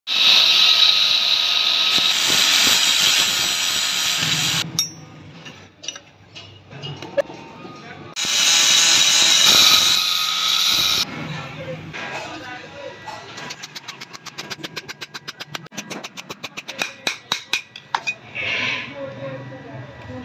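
Angle grinder with a flap disc grinding a steel trowel blade, a loud steady high grinding noise for the first few seconds. A second loud grinding pass follows, a wire-brush wheel working the blade, then a quick run of sharp ticks, about six a second.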